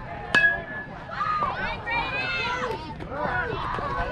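A metal baseball bat hits the ball with a sharp ping that rings briefly, about a third of a second in. Spectators then yell over one another.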